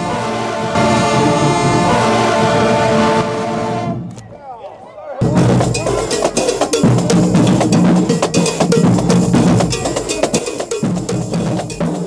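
Marching band brass section, trumpets and sousaphones, playing sustained notes that fade out about four seconds in. After a short lull the drumline starts a loud, fast cadence on snare, tenor and bass drums.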